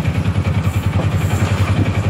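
Vehicle engine running with a steady, fast-pulsing low rumble, heard from inside the passenger cabin.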